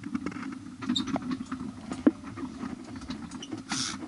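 Light scattered clicks and rustles over a steady low hum, with a few sharper ticks about one and two seconds in and a short hiss near the end.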